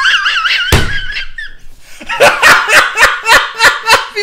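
A man laughing hard in loud rhythmic bursts, about four a second, through the second half. Before it comes a high wavering squeal with a single thump about a second in.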